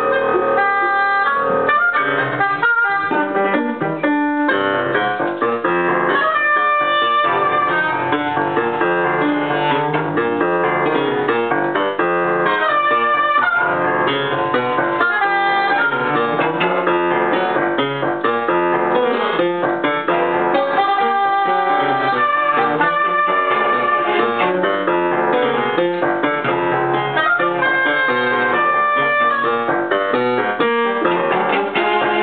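An instrumental ensemble playing a continuous passage of the piece, many pitched notes sounding together without a break.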